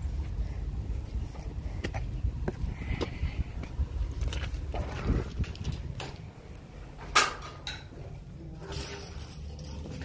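Wind rumble on a phone microphone with footsteps and small knocks as someone walks in through glass office doors; about seven seconds in a door shuts with a loud sharp click, and the rumble drops away.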